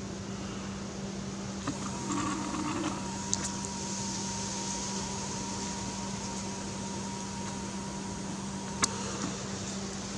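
Camera lens zoom motor whining at one steady pitch for about seven seconds as the lens zooms out. It starts and stops with a click, over a steady low hum and hiss.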